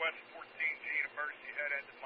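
A man's voice talking over a railroad radio, heard through a scanner: narrow and tinny, with steady faint background hiss.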